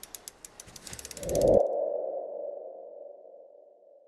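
Animated logo sound effect: a run of sharp ticks that come faster and faster, swelling into a whoosh that peaks and cuts off about a second and a half in, leaving a single held tone that slowly fades away.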